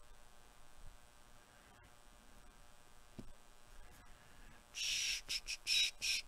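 Handled stack of glossy trading cards being slid and flipped against one another: a quick run of short papery swishes about three-quarters of the way in, after a stretch of faint room hum.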